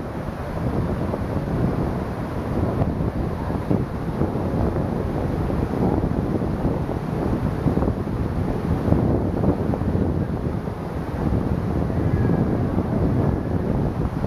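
Steady rush of river water pouring over a low dam and through rocky rapids, with wind buffeting the microphone.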